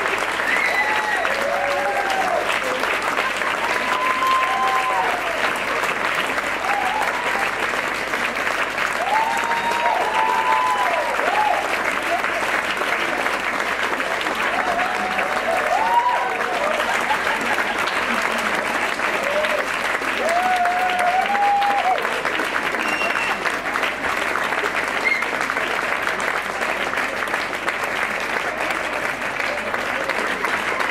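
Audience applauding steadily throughout, with voices calling out and whooping over the clapping during the first twenty seconds or so.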